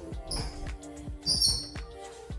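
Background music with a steady beat of low drum hits, about four a second, under sustained tones. A brief high-pitched sound rises above it about two-thirds of the way in.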